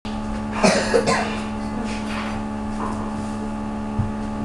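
A person coughing briefly, about half a second in, over a steady electrical hum from the recording setup.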